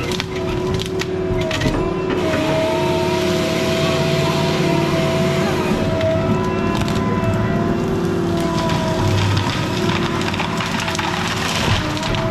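Tigercat tracked logging machine running under load, its engine and hydraulics holding a steady whine, while wood cracks and snaps sharply several times as the grapple saw head works timber.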